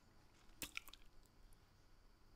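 Near silence, with two faint short wet clicks from the man's mouth a little over half a second in.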